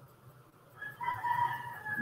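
A rooster crowing: one drawn-out call starting about halfway through.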